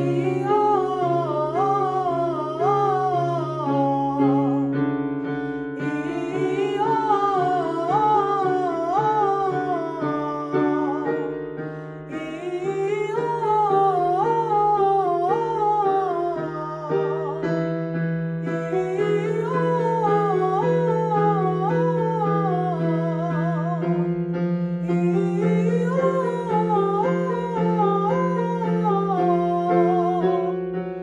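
Vocal warm-up exercise: a voice sings a quick up-and-down scale pattern over held piano chords, repeated in phrases of about five seconds with a short break between them.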